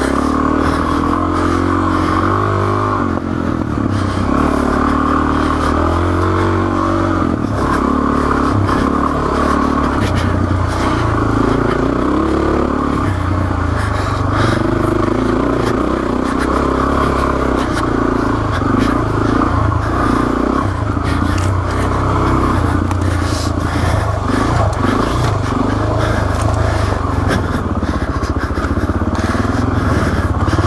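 Suzuki DR-Z400S's single-cylinder four-stroke engine running on rough dirt trail, its pitch rising and falling with the throttle. Clatter and knocks from the bike jolting over the trail run through it.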